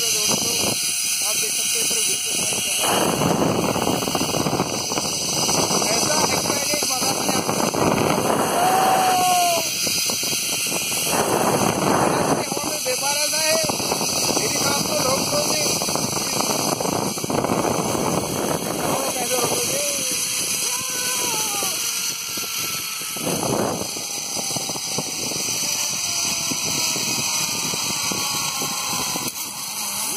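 Wind buffeting a phone's microphone during a zipline ride, a steady loud rush that eases slightly in the second half. A man's voice calls out now and then over it.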